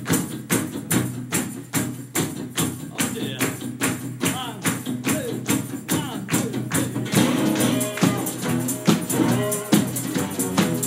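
Instrumental intro of an acoustic blues tune: a resonator guitar played with a slide, its notes gliding and bending, over a steady beat of about four sharp hits a second from a snare drum played by hand.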